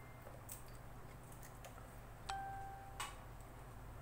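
Faint clicks from a handheld dynamic microphone's XLR connector being plugged in and handled, over a low steady hum. A little past two seconds in, a short steady electronic beep sounds for under a second and stops with a click.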